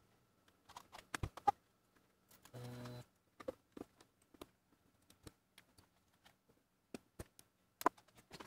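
Scattered light plastic clicks and taps as 3D printed key stems are handled and pushed into an HP-86 keyboard's key switches, with a brief low hum about two and a half seconds in.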